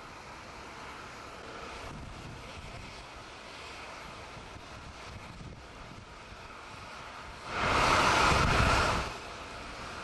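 Jet aircraft engine noise on an airport apron, a steady rushing hum. About seven and a half seconds in, a much louder rush of noise swells for about a second and a half, then drops back.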